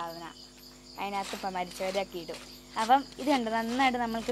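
Crickets chirring steadily in a high, even pulse, under a voice whose pitch wavers up and down, with a brief soft hiss about a second in.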